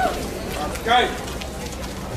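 A short, arching call from a person's voice about a second in, over outdoor crowd noise and a steady low rumble.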